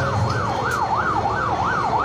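A siren warbling rapidly up and down, about three rises and falls a second, in a steady high wail.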